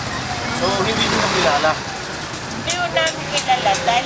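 Indistinct voices of several people talking at a market stall, over a steady background of street and traffic noise.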